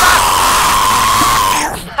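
A person screaming in fright: one long, loud scream that sinks slightly in pitch and breaks off near the end.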